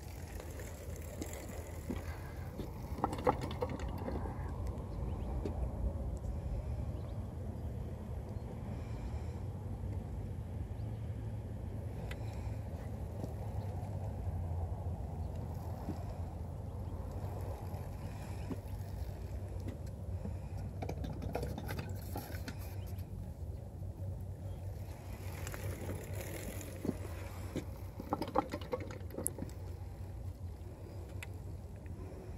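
Steady low wind rumble on the microphone, with a few scattered light clicks and knocks, most of them near the end.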